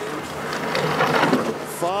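Skeleton sled's steel runners sliding on the ice of a bobsleigh track: a rushing scrape that swells as the sled passes and is loudest about a second in.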